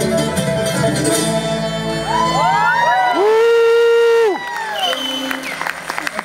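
A bluegrass band of fiddle, banjo, acoustic guitars and upright bass finishing a song: several notes slide up into a long held final chord that cuts off a little past four seconds in. Audience applause and cheering follow.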